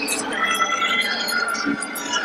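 A person's raised, drawn-out voice, high-pitched, over the background noise of a large hall.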